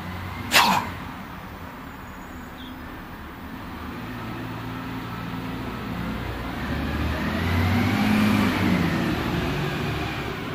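A road vehicle passing: engine and tyre noise swell over several seconds, peak near the end with a faint rising-then-falling whine, and begin to fade over a steady drone of distant traffic. A single short, sharp burst of sound comes about half a second in.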